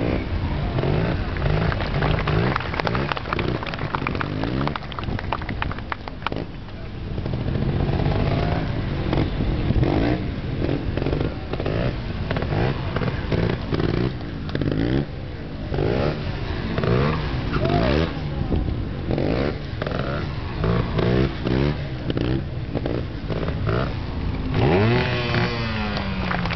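Motorcycle engines revving up and down again and again during wheelie stunts, with one strong rev rising and falling near the end.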